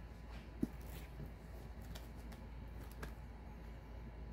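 Faint handling noises of plastic-sleeved paperback books: soft rustles and a light tick a little after half a second in, over a low steady hum.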